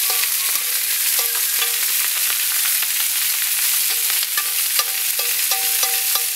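Chicken breast and sliced vegetables sizzling steadily on a hot barbecue plate. A spatula turns and scrapes through the vegetables, adding many light clicks and short scraping tones, more of them in the second half.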